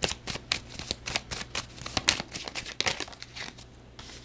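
A deck of tarot cards shuffled by hand: a quick run of card clicks and brushing slides that stops shortly before the end.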